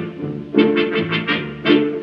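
Orchestra playing a lively accompaniment of short repeated chords, about five a second, between a tenor's sung phrases in a Neapolitan song, heard on an old 1948 radio broadcast recording.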